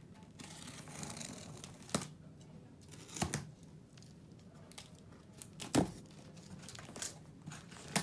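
Box cutter slitting the packing tape on a cardboard box: tape tearing and cardboard scraping and rustling, broken by several sharp clicks and knocks, the loudest a little before six seconds in.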